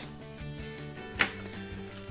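Quiet background music with steady held notes, and one short sharp tap about a second in.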